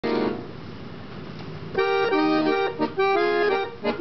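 Piano accordion playing a waltz melody over sustained chords, starting about two seconds in after a brief opening chord and a stretch of handling noise.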